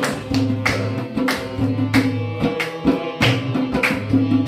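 Harmonium holding sustained reed chords under a double-headed hand drum and hand claps, sharp strokes coming a little under twice a second, in devotional kirtan-style music.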